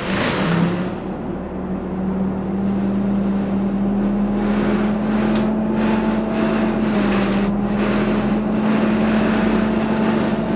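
Dennis Dart SLF bus heard from inside the saloon as it pulls away: a short hissing burst at the start, then the diesel engine working under load with a steady drone that climbs slightly and grows louder. A faint high whine rises over the last few seconds.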